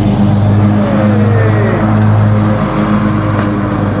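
John Deere riding lawn mower running steadily as it comes along the fence line, a loud, even engine drone that swells and eases slightly.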